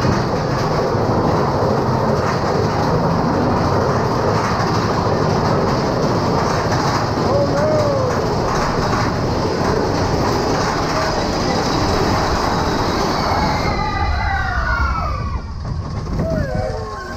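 Mine-train roller coaster running through a tunnel, its cars rumbling and clattering steadily along the track. Near the end, as it comes out into the open, riders' voices rise in whoops over the ride noise.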